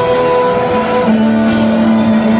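Acoustic guitar strummed and held on a chord, changing to a new chord about a second in.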